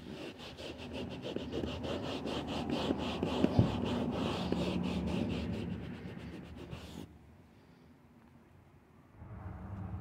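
Microfiber rag rubbing and buffing across a leather car seat in quick back-and-forth strokes, wiping off black leather dye worked into scuffed spots. The rubbing stops about seven seconds in.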